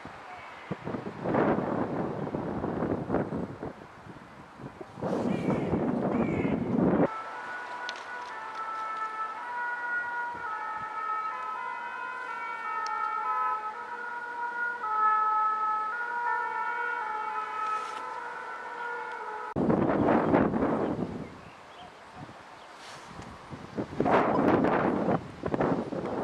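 Wheels of the passing 241P17 steam train squealing on curved track: several high steady tones that shift and step in pitch for about twelve seconds in the middle. Loud gusts of wind on the microphone come before and after.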